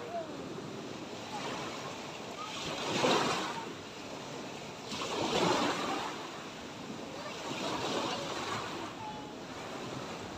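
Small sea waves breaking on a sandy shore: the wash of the surf swells three times, about three, five and a half and eight seconds in, the first two the loudest.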